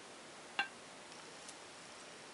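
A single light clink against a clear glass plate about half a second in, short and slightly ringing, as a paintbrush dots paint onto it; otherwise faint room tone.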